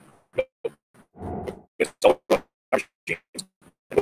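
A speaker's voice over a video call breaking up into short clipped scraps, about three or four a second, with dead gaps between them and one slightly longer scrap about a second in: the audio stream dropping out over a poor connection, which leaves it unintelligible.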